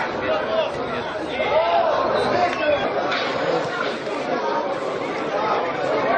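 Indistinct chatter of several voices talking over one another, with no single clear speaker.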